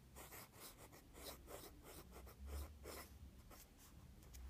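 ONLINE calligraphy fountain pen with a 0.8 mm metal nib writing on paper: faint scratching of the nib in a quick run of short strokes.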